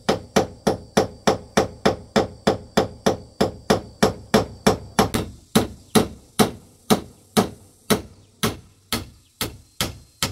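Claw hammer driving a nail through a corrugated roofing sheet into a bamboo frame, with a steady run of strikes. They come about three a second at first and slow to about two a second in the second half.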